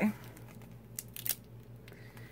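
Rolled diamond-painting canvas in its plastic cover film being handled, giving a few faint, short crinkles and rustles.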